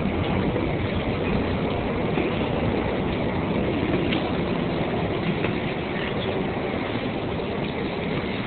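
New York City subway train running: a steady rumble with rail noise and a few faint clicks.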